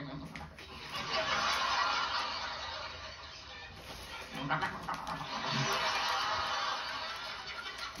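Studio audience laughing, with a man making a croaking, turkey-like old-woman vocal noise into a handheld microphone about halfway through. Heard through a television's speaker.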